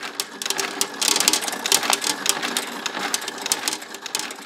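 Steel pachinko balls clattering through a pachinko machine: a dense, irregular run of small metallic clicks that grows busier about a second in, over faint electronic tones from the machine.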